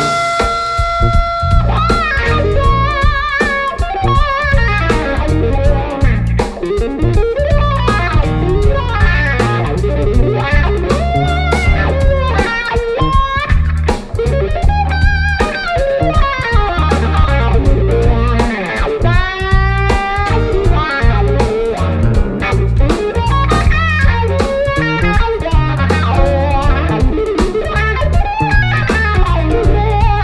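Instrumental blues-funk band of electric guitar, electric bass, drum kit and grand piano playing a groove. The electric guitar leads with bent notes and vibrato over the bass and drums.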